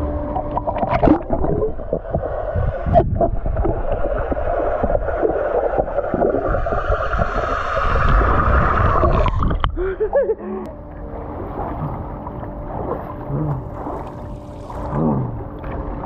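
Swimming-pool water sloshing and gurgling around a camera at the waterline, which goes under the surface so the sound turns muffled and bubbly. The water noise is loud for the first ten seconds or so, then quieter.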